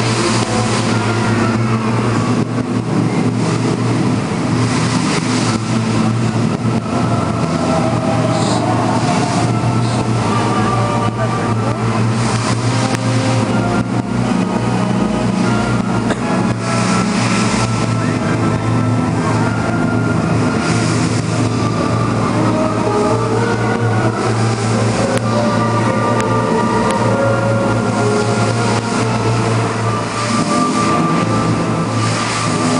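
Loud, steady rush of water from lit fountain jets, with music in sustained notes playing under it.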